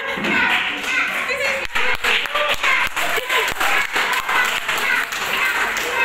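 A quick run of sharp slaps, about three a second, over chattering voices in a hall.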